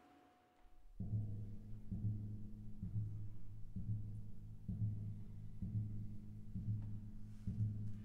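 Music: a deep, low-pitched drum beating a steady pulse a little faster than once a second, entering about a second in, each stroke ringing on into the next.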